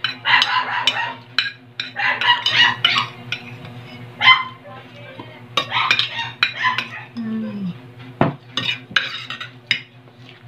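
A dog barking in short bouts of three or four barks, with one sharp knock about eight seconds in.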